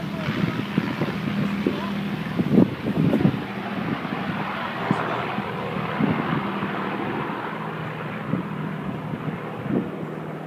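Avro Lancaster bomber's four Rolls-Royce Merlin V12 engines droning steadily as it flies past, fading slowly as it moves away over the second half.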